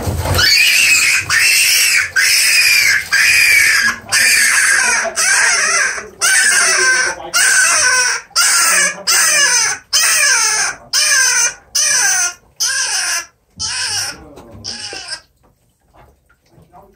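Rabbit screaming in distress while a Burmese python constricts it: a long run of loud, high-pitched screams, about one a second. Near the end the screams grow shorter and fainter, then stop.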